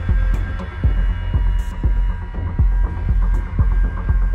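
Background intro music with a deep pulsing bass beat and held electronic tones.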